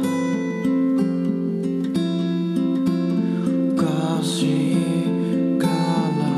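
Acoustic guitar playing chords in a slow song, the notes changing about every half second.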